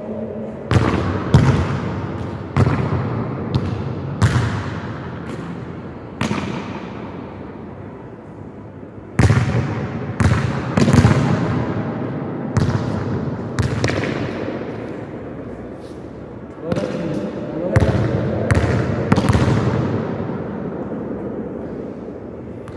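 A football being kicked and hitting hard surfaces in a large, echoing covered court: over a dozen sharp thuds at irregular intervals, each ringing out in a long reverberant tail.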